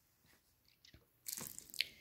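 Near silence, then about a second in a brief soft rustle and scrape as a faux-fur mini backpack is handled and shifted against the bags beside it, with a short high tick near the end.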